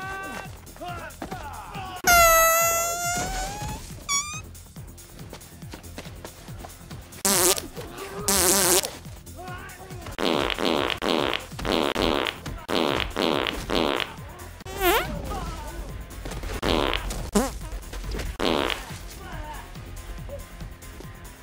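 Dubbed-in fart sound effects, one after another, over the fight's music. A long fart falls in pitch about two seconds in, two loud ones come around seven to nine seconds, then a run of about seven short ones follows in quick succession, with a few more near the end.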